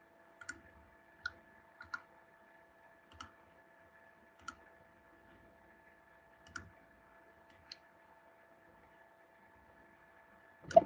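Faint, irregular clicks of a computer mouse, about eight in all, over a faint steady electronic tone.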